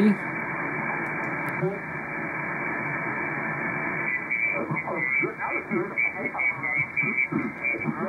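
Lower-sideband receiver audio from an RTL-SDR with an upconverter, tuned to the 40-metre ham band's phone portion: band hiss cut off above about 2.4 kHz by the SSB filter. About halfway through, a single-sideband voice comes in, not yet tuned in cleanly, with some whistly tones.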